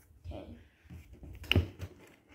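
Boxed toy-gun packages being handled inside a cardboard shipping box, with one sharp clack about one and a half seconds in as a package is set down.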